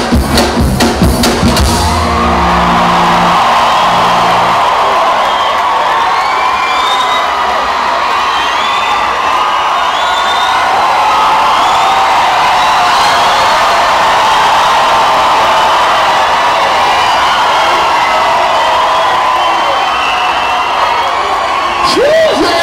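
A band's drumming and bass end about two seconds in. A large crowd then cheers, whoops and screams steadily for the rest.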